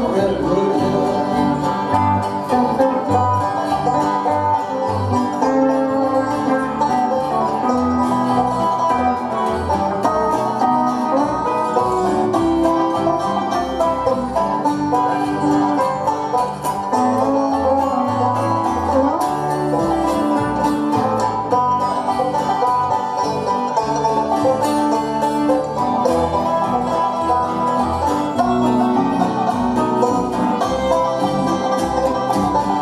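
Live acoustic folk band playing an instrumental passage, banjo and acoustic guitars picking over fiddle and a steady upright bass line.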